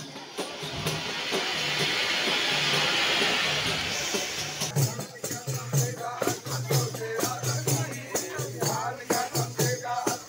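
Procession percussion music with a rattling shaker or jingle sound over a crowd. For the first few seconds a loud rushing wash covers it. About halfway through, quick regular drum strikes come through clearly.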